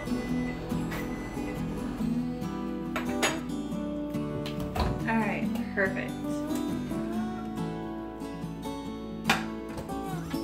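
Background acoustic guitar music. Partway through, a few sharp clicks and knocks come through: the door of a Maytag over-the-range microwave being opened and the plated squash being taken out.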